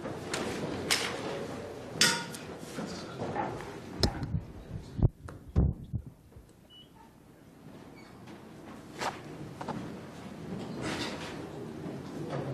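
Knocks, clicks and dull thumps of equipment being handled at a microphone-equipped lectern, several sharp bumps in the first half with the heaviest, boomy thumps about five seconds in, then a quieter stretch with a few lighter knocks.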